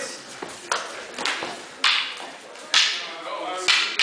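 Escrima sparring sticks striking during a stick-fighting exchange: about five sharp, separate cracks at irregular intervals, ringing briefly in a large hall.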